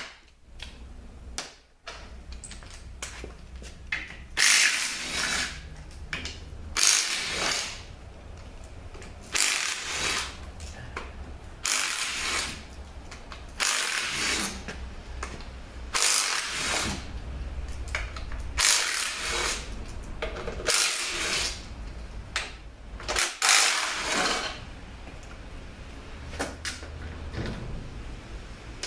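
Ratchet spinning out transmission oil pan bolts in short bursts, about one every two seconds, over a steady low hum.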